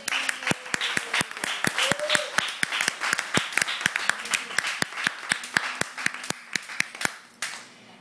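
A small audience applauding, joined by the singer clapping into the microphone. Loud, sharp claps come about five a second and stop about seven and a half seconds in.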